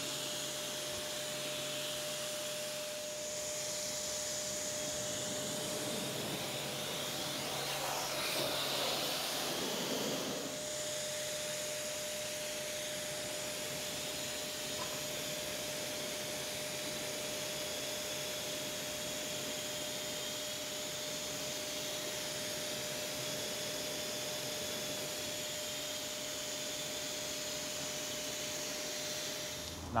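Pressure washer running: the hiss of the water jet rinsing wheel soap off a car's wheel and tyre, over the pump's steady whine. The spray grows a little louder and rougher for a couple of seconds about eight seconds in.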